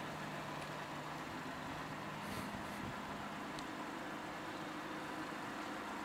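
A steady low engine hum, like a vehicle idling, with a couple of faint ticks about two and three and a half seconds in.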